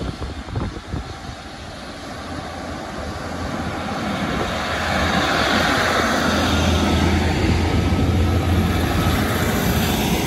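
Class 150 diesel multiple unit running past the platform. Its underfloor diesel engine drone and wheel-on-rail rumble grow louder over the first five seconds and then hold steady as the coaches go by, with a few sharp clicks in the first second.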